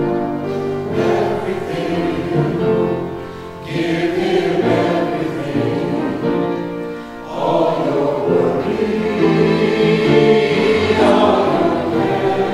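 Choir singing a sacred piece in long, held chords, the phrases dipping briefly about three and a half and seven seconds in.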